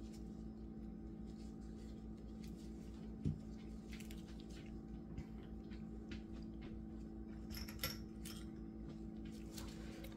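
Steady low electrical hum, with faint scattered clicks and taps of small containers and tools being handled, a soft knock about three seconds in and a short cluster of clicks near the end.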